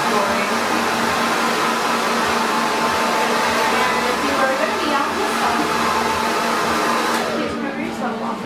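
Handheld hair dryer blowing steadily on short hair, a constant rush of air with a steady motor hum. The airflow noise dies down near the end.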